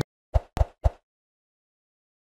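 Three short plop sound effects in quick succession, about a quarter second apart.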